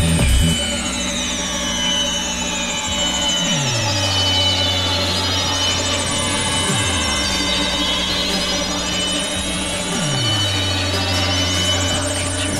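Electronic dance music in a breakdown: the kick drum drops out about half a second in, leaving a deep bass note that slides down in pitch and holds, repeating about every three seconds, under high sweeping synth lines.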